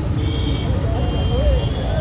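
Steady low rumble of street traffic, with a crowd's voices murmuring faintly underneath.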